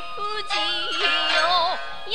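Background music: a song with a voice singing a melody that bends and wavers in pitch, over steady held accompaniment.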